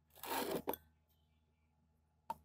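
A brief scrape and then a light click, glass on glass, as a round-bottom flask is lifted out of the glass bowl it stands in.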